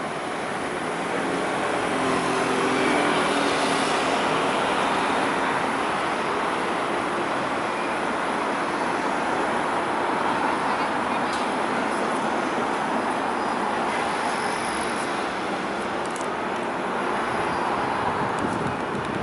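Steady road-traffic noise from a city street, swelling in the first few seconds as a vehicle's engine passes close by.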